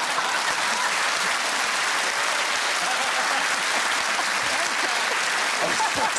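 Studio audience applauding: a steady, dense wash of clapping that holds at an even level throughout.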